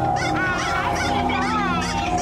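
A plastic toy horn honking in a quick run of short, wavering, squawky notes, over a steady low hum.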